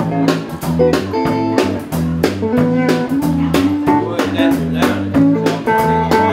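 Live blues band playing an instrumental passage: a repeating electric bass line and electric guitar notes over a steady drum beat.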